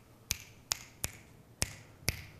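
Fingers snapping: four sharp snaps in two seconds, unevenly spaced.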